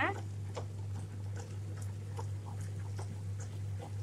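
Tabletop wet grinder running: a steady low motor hum as its stone rollers grind soaked red rice into dosa batter, with scattered light clicks.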